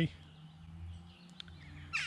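Quiet outdoor woodland ambience with faint bird chirps and a single small tick about one and a half seconds in.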